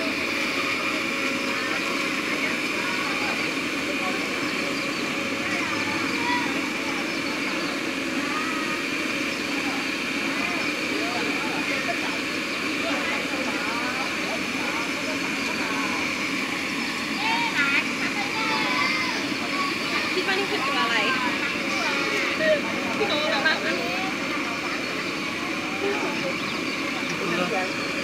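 Cotton candy machine running with a steady motor whir as sugar is spun into floss and wound onto a stick. Voices chatter in the background, more so in the second half.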